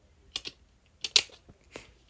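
A handful of sharp plastic clicks from DVD discs being pressed and lifted on the snap-in hubs of plastic disc trays, the loudest about a second in.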